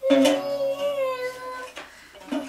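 A toddler singing one long held note that sinks slightly in pitch and fades after about a second and a half, starting together with a strum on a small acoustic guitar.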